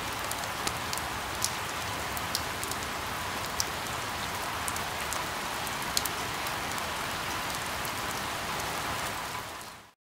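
Steady rain falling, a dense even hiss with scattered sharper drop ticks, fading out just before the end.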